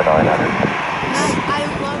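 Jet airliner engines, a steady loud rush of engine noise as the aircraft passes close by on the runway.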